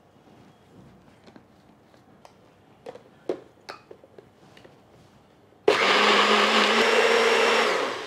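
A few light clicks and knocks as the cup of a bullet-style personal blender is seated on its motor base. Then, near the end, the motor starts suddenly and runs loud and steady for about two seconds, grinding a thick onion and yogurt masala into a smooth paste, before winding down.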